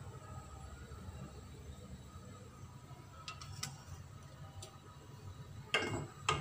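Gas stove burner running with a quiet, steady low rumble under a pot of simmering noodles, with a few faint ticks. Near the end, a plastic ladle clatters against the ceramic pot as stirring begins.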